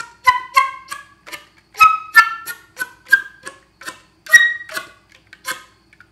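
Flute played with slap tongue, the tongue slapped against the teeth: a run of short popped notes, about three a second, each a sharp click with a brief pitched tone, stepping upward in pitch. A little air is pushed just before each note so the slaps reach into the higher octave.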